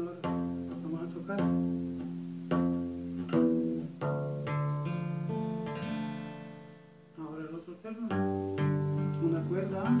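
Classical guitar played in a slow strummed rhythm, changing between G major and E minor chords. The strokes come about once a second, and midway one chord is left to ring and fade before the rhythm picks up again.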